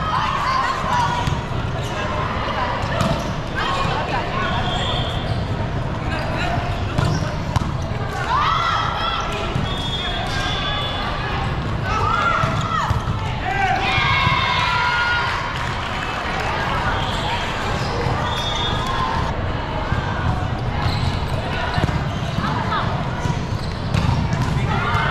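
Volleyball being struck in a rally, sharp hits over a steady hum of voices in a large hall, with players shouting calls to each other several times in the middle.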